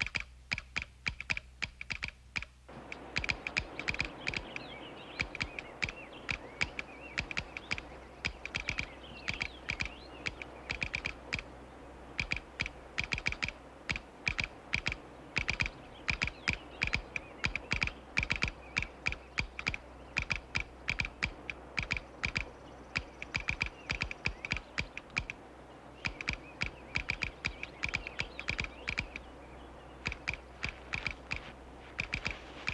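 Telegraph instrument clicking out a Morse code message on the line, in rapid runs of sharp clicks broken by short pauses.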